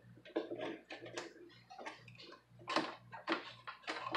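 Irregular light clicks and taps of a sheet-metal shield plate being set back onto an all-in-one PC's chassis, with a few louder knocks about three seconds in.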